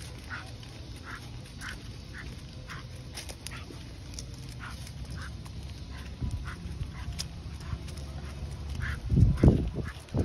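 A dog on a leash, breathing and sniffing in short repeated sounds a few times a second. Near the end, a loud burst of wind or handling noise on the microphone.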